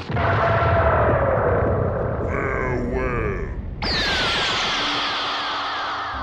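Part of a music track: a sampled, film-like sound passage starting suddenly, with voice-like sounds and falling-pitch effects. A second sudden hit comes about four seconds in, followed by more falling tones.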